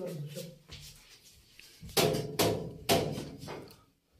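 Laughter: a few loud bursts about two seconds in, dying away before the end.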